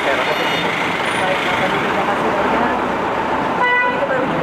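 Busy market ambience: a steady wash of indistinct voices and traffic noise, with one short horn toot near the end.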